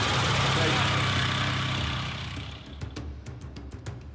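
A Fiat 126p's air-cooled two-cylinder engine running steadily as the small car moves off, fading out after about two and a half seconds. It is followed by music with sharp, regular drum hits.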